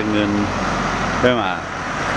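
A person speaking in two short phrases over steady background noise.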